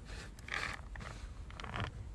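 Four short scraping sounds from an opened metal food can being moved about, the loudest a little after half a second in and another near the end.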